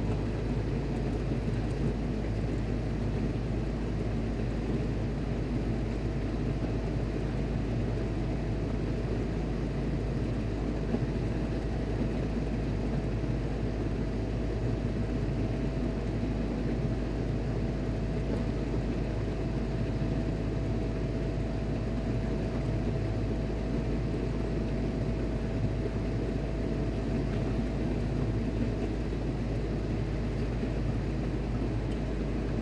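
Steady low drone of ship's machinery running, a constant deep hum with no breaks. A faint steady whine joins it about six seconds in and fades out near the end.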